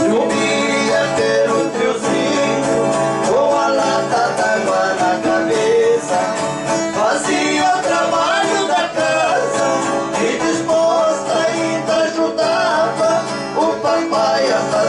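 A viola caipira and an acoustic guitar playing a moda de viola tune together, with bright plucked strings and a steady strum.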